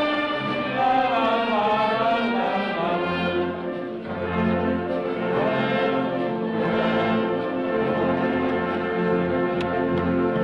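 A brass-heavy amateur wind band (harmonie) playing; the melody wavers in pitch over the first few seconds, then the band settles into sustained held chords.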